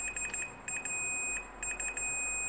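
Fluke 177 multimeter's continuity beeper sounding a high beep that stutters on and off and holds steady for a moment in the middle, as the probes across the oven control board read a low resistance: a short circuit, which can be caused by the blown-up capacitor.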